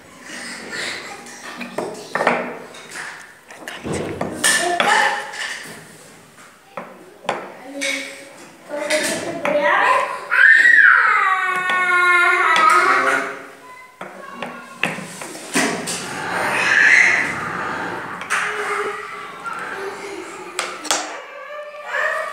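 Children's voices in a classroom, loudest as one long high call sliding down in pitch about ten seconds in, over scattered light wooden knocks and clicks as knobbed wooden cylinders are set into and lifted from their wooden block.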